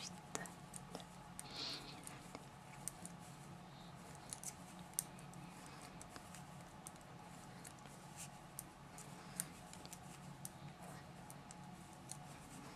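Metal 4 mm knitting needles clicking faintly and irregularly as stitches are knitted, over a steady low hum.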